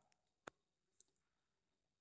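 Near silence: room tone, with a faint click about half a second in and a fainter one about a second in.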